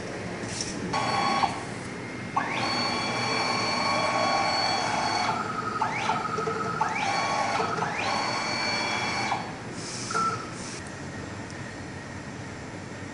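Mini UV flatbed printer's tray motor whining in several runs as the print bed carrying the phone case moves. Each run starts with a quick rise in pitch and then holds steady; the longest lasts about three seconds.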